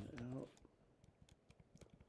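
Keystrokes on a computer keyboard: a handful of light, separate clicks as letters are typed.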